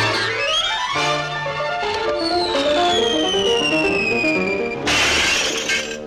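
Cartoon score music, with a long falling whistle-like tone and then a mirror's glass shattering about five seconds in.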